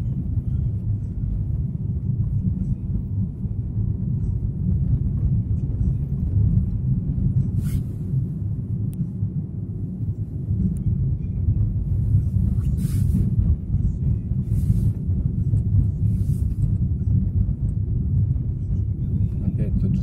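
Steady low rumble of a car's engine and tyres heard from inside the cabin while driving on snow-covered roads, with a few brief hisses in the second half.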